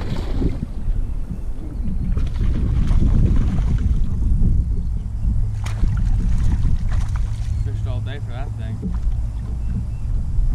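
Wind noise on the microphone throughout, with splashing as a hooked bass thrashes at the surface next to the boat. A short voice is heard about eight seconds in.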